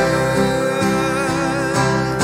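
A man singing a long held note while strumming an acoustic guitar, as a worship song.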